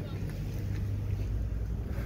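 Steady low outdoor rumble of wind on the microphone mixed with street traffic, with no sharp events.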